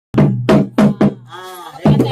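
Frame drums struck by hand: four sharp strokes with a low ringing tone, then a short call from a voice that rises and falls. Fast drumming starts again near the end.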